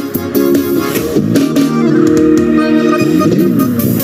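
Live stage music led by plucked guitar, with sustained notes.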